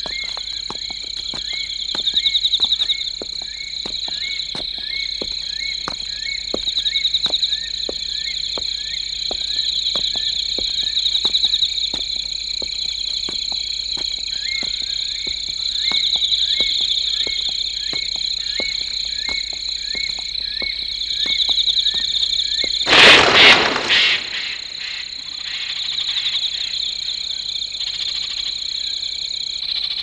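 Night-forest ambience in a cartoon soundtrack: a steady high insect drone that swells every few seconds, over short chirping clicks about twice a second. About 23 seconds in, a loud burst of noise lasting around a second breaks in, and afterwards the clicks thin out, leaving the drone.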